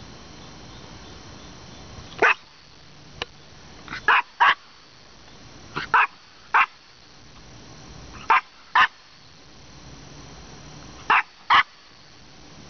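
A small Maltese dog barking in short sharp yaps, about nine in all, mostly in quick pairs a second or two apart.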